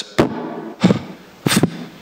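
Plosive pops on the ambo microphone: a man speaking right up against it so that his consonants burst into the mic, three sharp pops about two-thirds of a second apart. This is the sound of standing too close to the mic, where consonants "explode and don't sound very good".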